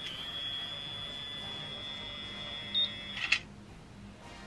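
BaByliss automatic hair curler giving a steady high electronic beep for about three seconds, which ends with a couple of sharp clicks.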